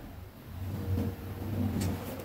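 Faint steady low hum with no speech, and a brief faint tick near the end.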